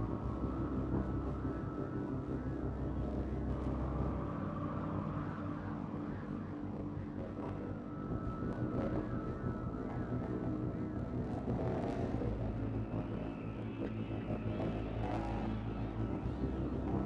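Dark ambient noise soundtrack: a dense, steady low rumbling drone with warbling tones wavering above it.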